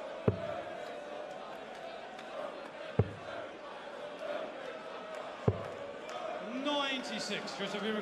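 Three steel-tip darts striking a Unicorn Eclipse bristle dartboard, one at a time about two and a half seconds apart, each a single sharp knock over a low crowd murmur in a large hall.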